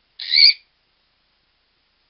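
Monk parakeet (Quaker parrot) giving one short, loud squawk with a slight upward lift in pitch, a quarter of a second in.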